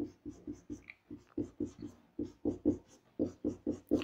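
Marker pen drawing asterisks on a whiteboard: a quick run of short strokes, about four a second, each star made of a few separate strokes.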